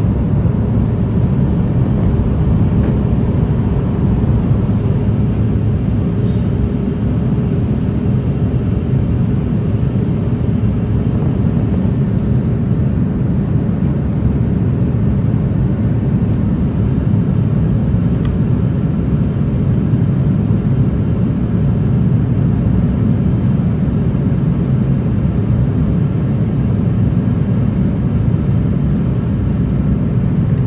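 Steady, deep engine and airflow noise of an Airbus A330 heard inside the passenger cabin as the airliner climbs out after takeoff.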